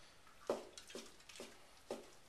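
Cleaver slicing rehydrated Chinese black mushrooms on a wooden chopping board: about five soft knocks of the blade meeting the board, a fraction of a second apart.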